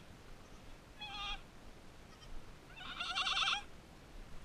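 Goat kids bleating: a short high-pitched bleat about a second in, then a longer, louder, quavering bleat about three seconds in.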